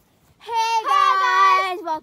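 A girl singing a short phrase of held notes, stepping between pitches, starting about half a second in and lasting about a second and a half.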